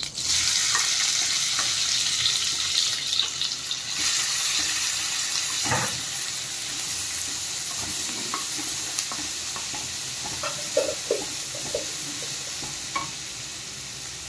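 Chopped small onions hitting hot oil with cumin seeds, setting off a sudden sizzle that slowly dies down. A wooden spatula stirring them scrapes and taps the pan, mostly in the second half.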